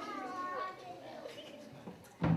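Faint child's voice: one brief, high-pitched vocal sound in the first second, then a low murmur of voices.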